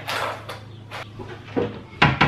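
Plastic food containers being handled and set down on a kitchen counter: a short rustle, then a few light, separate knocks about half a second apart.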